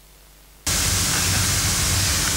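A faint hiss, then about two-thirds of a second in a loud, steady static hiss with a low hum cuts in suddenly, like an audio channel opening on the hall's sound system.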